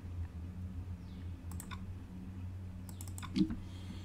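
Computer mouse clicks while navigating folders: a couple about one and a half seconds in and a few more around the three-second mark, over a steady low hum.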